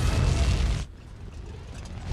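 Film sound effect of the starship Franklin's thrusters firing: a loud, deep rushing rumble that drops off sharply about a second in, leaving a quieter low rumble.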